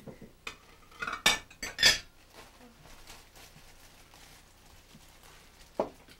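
Dishes and cutlery clattering on a table: a quick cluster of sharp clinks and knocks about a second in, then one more knock near the end.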